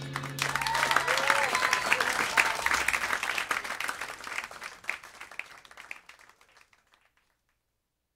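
Audience applauding at the end of a live jazz tune, with a few whoops early on. The clapping thins and fades away by about seven seconds in.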